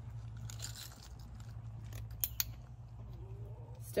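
A handheld animal-training clicker gives a sharp double click a little over two seconds in, marking a red fox for eating inside her shift box. Faint crunching comes from the fox eating dry dog food from a bowl.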